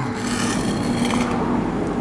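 A knife sawing back and forth through a baked cake's crisp topping of grated cheese and kenari (canarium) nuts, a steady dry scraping crunch of the crust giving way.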